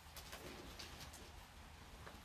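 Faint rustling of nylon tent fabric being folded and handled, a few soft crinkles over a low room hum.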